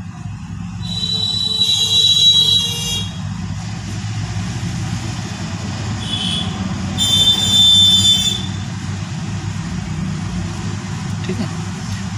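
Two long high-pitched horn blasts, one about a second in lasting about two seconds and another about seven seconds in lasting about a second and a half, over a steady low rumble.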